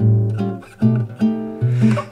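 Acoustic guitar playing bossa nova chords: about four plucked chord strokes, each with a low bass note under it, ringing and dying away between strokes.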